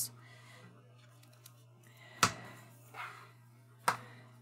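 Cardstock scrapbook pages being handled on a cutting mat: two sharp taps about a second and a half apart and a soft paper rustle between them, over a low steady hum.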